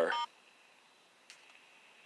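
A smartphone keypad's dialing tone as the star key is pressed during a call, a short beep of about a quarter second at the very start. Then only faint line hiss, with one small click about a second later.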